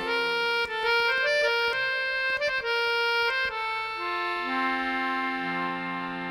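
Squeezebox playing an instrumental interlude in a folk ballad: a run of quick melody notes over the first few seconds, then a held chord.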